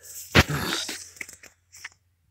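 Phone camera being handled and moved: a sharp knock about half a second in, then rustling and crunching, with a few small clicks near the end.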